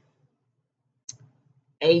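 Quiet room with one brief, high-pitched click about a second in, then a woman's voice begins near the end.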